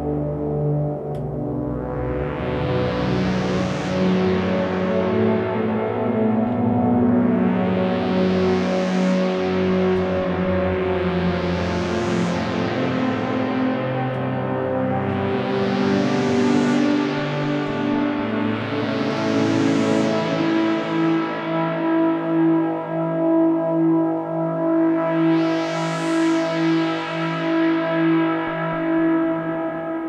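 Stylophone Gen X-1 analogue synth playing a slow pad through long plate and reverse reverb. Single stylus notes, played as chord tones, swell in and blend into sustained ambient chords, brightening and fading about every four seconds.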